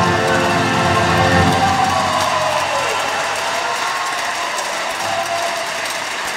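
A male classical singer and a string orchestra end on a held final chord, which dies away about two to three seconds in. Audience applause follows.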